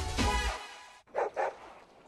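Music fading out about half a second in, then a dog barking twice in quick succession about a second in.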